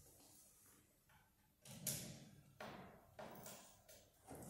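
Faint handling sounds as the door of a glass-fronted wooden display cabinet is unlocked and opened by hand: a few short knocks and rustles in the second half.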